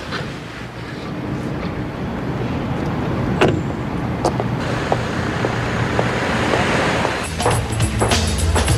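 Car and street traffic noise, building slowly, with a car door shutting about three and a half seconds in and a few lighter clicks after it. Music with a drum beat comes in near the end.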